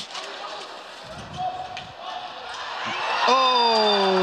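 Indoor hockey play in a hall: a few faint knocks of stick and ball on the court floor over low arena noise. Then, about three seconds in, a man's voice rises into one long drawn-out exclamation that slowly falls in pitch as the goal goes in.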